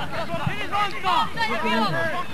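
Several voices shouting and calling out over one another on a football pitch, from players and spectators during play.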